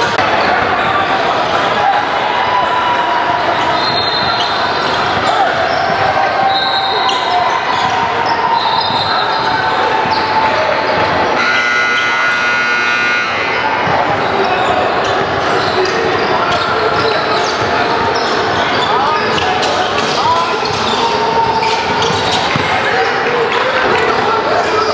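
Basketball game in a large gym: a ball bouncing on the hardwood floor, short high sneaker squeaks, and voices echoing around the hall. About halfway through, a buzzer sounds for about two seconds.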